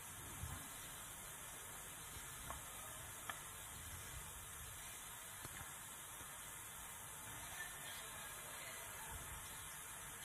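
Faint steady hiss of background noise with a few small clicks, no rocket sound.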